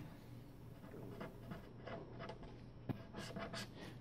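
Pen writing on paper, faint scratching strokes, with one sharper tick about three seconds in.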